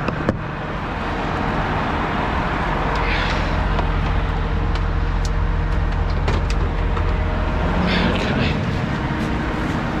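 A large diesel truck engine idling steadily while road traffic passes. The traffic noise swells through the middle and eases near the end. A few sharp clicks and knocks come from metal equipment lockers being handled.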